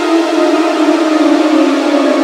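A siren-like drone in an ambient music track: a few steady tones sliding slowly down in pitch over a hiss.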